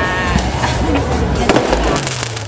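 Fireworks going off: a run of sharp pops and crackles, the loudest bang about a second and a half in, over a low steady rumble of crowd and street noise.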